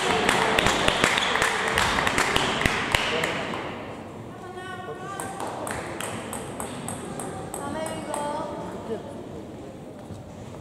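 Table tennis balls clicking off bats and tables, a rapid run of sharp clicks over loud voices for the first three seconds or so, then quieter with scattered voices and fewer clicks.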